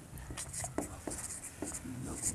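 Marker writing on a whiteboard: a quiet run of short scratchy strokes and taps of the felt tip as figures are written.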